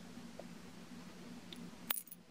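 Quiet room with a low steady hum and a few light clicks from a glass perfume bottle being handled, the sharpest one just before the end.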